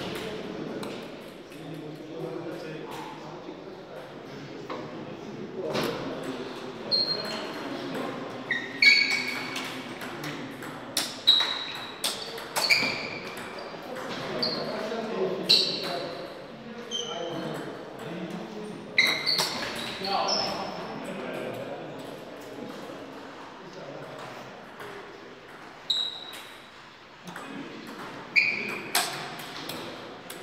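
Table tennis ball being struck back and forth by bats and bouncing on the table: sharp, short, high pings that come in several short runs of hits, with pauses between points. Crowd chatter from the hall runs underneath.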